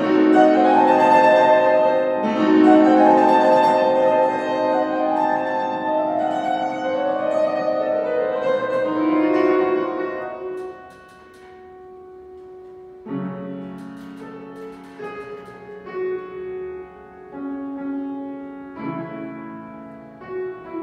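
Classical grand piano accompaniment, with a soprano's voice holding long notes over it for about the first ten seconds. The music then drops to a quiet moment, and the piano carries on alone from about thirteen seconds in.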